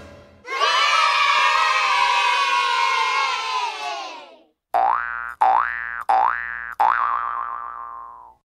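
Edited-in comedy sound effects: a crowd of many voices calling out together, sliding down in pitch for about four seconds, then four cartoon boings in quick succession, each a springy twang rising in pitch and cut off sharply.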